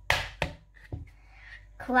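An egg being knocked against the rim of a bowl to crack it: three sharp taps about half a second apart, the first the loudest.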